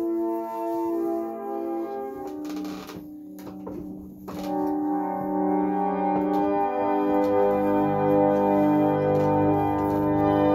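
A 120-year-old reed pump organ playing a slow hymn in held chords. It drops to a soft lull about three seconds in, then swells back, with low bass notes joining about two-thirds of the way through.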